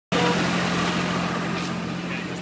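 An engine running steadily: an even, low hum under outdoor noise.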